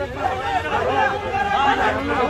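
Several men's voices talking over one another in a jostling crowd, an unbroken babble of overlapping speech.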